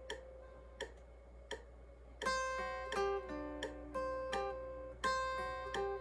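Hollow-body electric guitar playing a picked single-note solo line. The first two seconds hold a few sparse, quiet picks, then clearer ringing notes come in about two seconds in, over a steady low hum.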